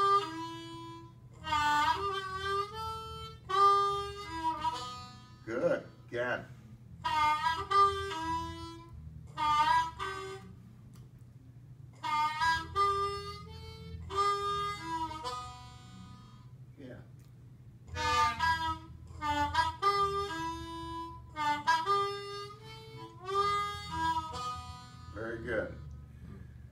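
Diatonic blues harmonica played in about six short phrases with pauses between, with notes sliding down in pitch and back up: a student practising a deeper bend on the number two hole.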